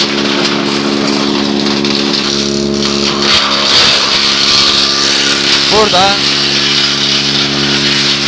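AG-1400 branch chipper running and shredding dried bay laurel branches into chips: a steady hum under a hiss.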